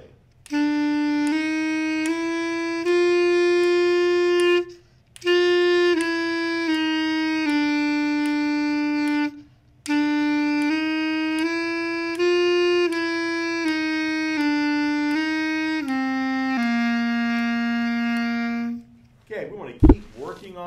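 A B-flat clarinet plays a slow stepwise exercise in three slurred phrases with short breaths between them. The phrases run E, F, F sharp, G and back down, and the last ends on a long held low C. The F sharp uses the chromatic side-key fingering so that the F to F sharp slurs move cleanly without extra notes. A sharp click comes just before the end.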